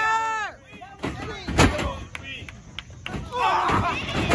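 A wrestler's body slamming onto the wrestling ring's canvas: one loud, booming thud about a second and a half in, with a few lighter knocks around it. There are shouted voices at the start and near the end.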